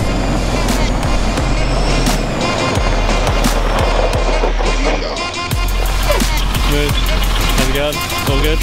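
Music with a steady beat and deep bass, over the rolling rumble of a small utility vehicle's tyres on a gravel track.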